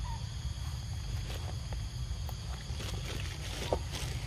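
Steady low rumble of wind on the microphone outdoors, with scattered faint clicks and one short squeak about three and a half seconds in.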